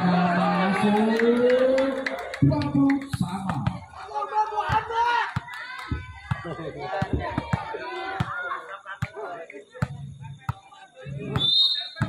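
A long drawn-out call from a voice over the first two seconds, its pitch rising. Then comes the chatter of volleyball spectators with scattered claps and knocks, and another voice near the end.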